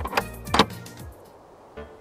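Two loud, sharp hits about half a second apart over film soundtrack music, followed by a quieter stretch.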